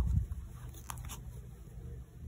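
Crochet hook working through yarn: soft scratchy handling with a few faint clicks, and a low bump near the start.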